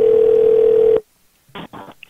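Telephone dial tone heard down the phone line, one steady hum that cuts off suddenly about a second in. Two brief faint sounds follow near the end.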